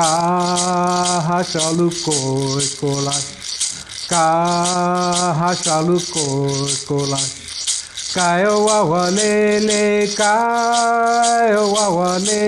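A man singing a Chumash song in long held phrases with short breaks. He keeps time with a handheld rattle shaken steadily, about three strokes a second.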